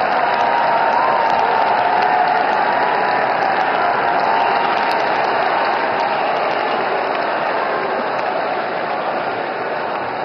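A large crowd applauding, a steady sustained patter of many hands that eases off slightly toward the end.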